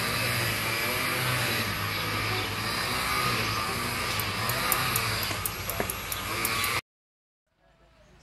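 A steady motor-like drone with a low hum, stopping abruptly about seven seconds in, after which there is near silence.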